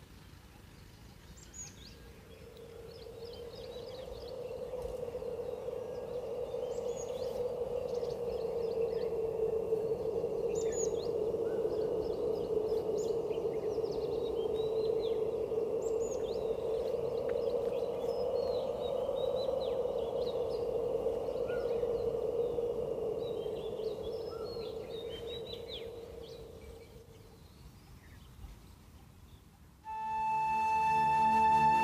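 Birds chirping, with a thin steady high tone running under them. Beneath both, a low droning hum swells up over several seconds, holds, and fades out near the end; it is the loudest sound.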